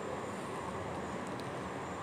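Chili-garlic paste sizzling steadily as it is poured into hot oil and browned cumin in a frying pan.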